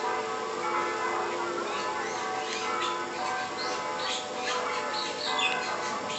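Sustained ringing tones at several pitches overlap throughout, like bells or music, while small birds chirp briefly and often above them.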